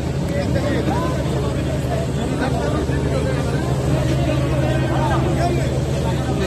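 A boat engine running steadily, with many people talking and calling out over it.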